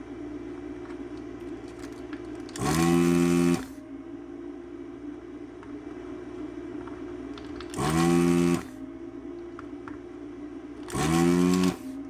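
Vacuum pump of an electric desoldering gun, run three times for about a second each to suck solder from a transistor's pins. Its motor whine rises in pitch each time it spins up. A steady low hum carries on between the runs.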